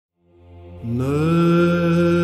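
Byzantine chant opening: a low steady drone fades in, and about a second in a voice enters, sliding upward onto a long held note over it.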